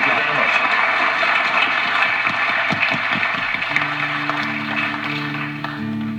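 Studio audience applauding, the applause slowly dying away. A little past halfway, steady held low notes begin: the opening of the song's introduction on guitar.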